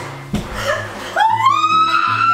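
A dull thump, then about a second in a young woman's long high-pitched scream that rises and then holds steady, over background music.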